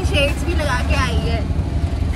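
Moving auto-rickshaw: a steady low engine and road rumble with wind blowing across the open cab, under a woman's voice.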